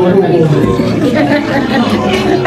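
Conversation: several people talking over one another in a restaurant dining room.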